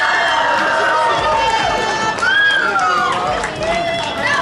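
Children and other onlookers shouting and cheering at a hanging challenge, with long high-pitched yells held through the first couple of seconds, then shorter shouts.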